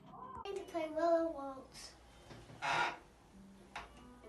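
A young girl's voice, high and wavering in a sing-song way, for about a second near the start, without clear words. A short breathy hiss follows near the middle, and a faint click comes shortly before the end.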